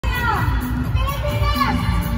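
Audience in a large hall shouting and cheering, with high-pitched shouts that slide down in pitch, over music with a pulsing bass.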